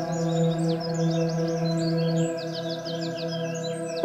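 Ambient bell music: a deep bell tone rings on steadily with its overtones. Birds chirp and trill quickly and high above it.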